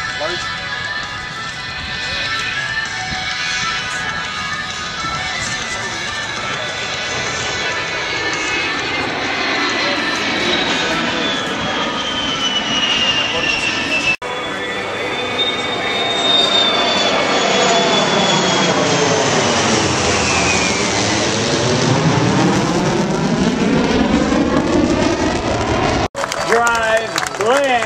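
Jet aircraft making low passes at an air show. The engine's whine slides down in pitch as each one goes by, twice. The second pass is louder, with a rushing roar that swells over the last part.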